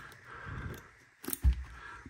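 Folding pocket knife cutting a thin cord off a pair of plastic cards: light rustling of handling, then a sharp snap about halfway through as the cord parts, with a low knock just after.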